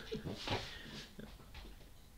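Quiet, breathy laughter: a few soft puffs of chuckling, the strongest about half a second in.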